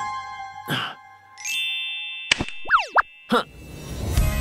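Cartoon electronic sound effects: held chime-like tones, a few sharp clicks, and a quick pair of sliding pitch sweeps about three seconds in.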